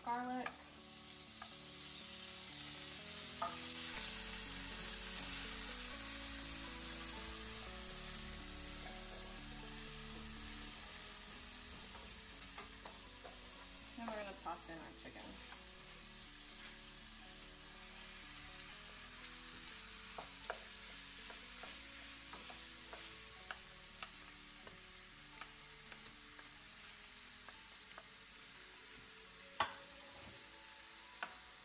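Cubed chicken breast and minced garlic frying with onions in olive oil in a pan on medium-high heat. The sizzle swells over the first few seconds after they go in, then slowly dies down, with occasional clicks of a utensil stirring.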